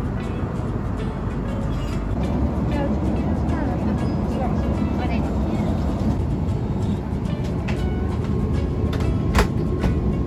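Steady roar of a jet airliner cabin in flight: engine and airflow noise, with a single sharp click near the end.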